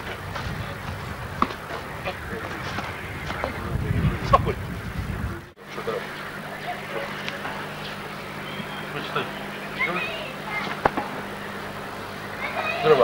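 Low-quality camcorder sound of outdoor sparring: a rumble of handling or wind noise with a few sharp knocks, then, after a brief dropout about halfway, a steady low electrical hum with faint voices and occasional clicks and knocks.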